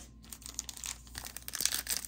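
Foil-wrapped trading-card pack being crinkled and torn open by hand: irregular crinkling with small clicks.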